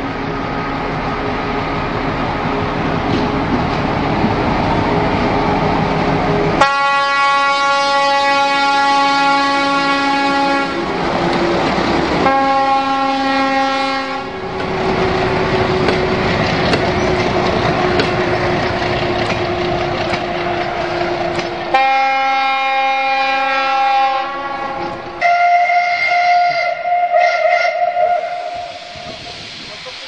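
Diesel locomotive, of the ČSD T 435.0 class, running under load as it hauls coaches, sounding its horn three times: a long blast about a quarter of the way in, a short one soon after, and another long one later. Near the end a different, higher-pitched whistle sounds for about three seconds.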